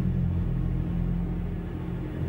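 A steady, low rumbling drone held on a few deep tones.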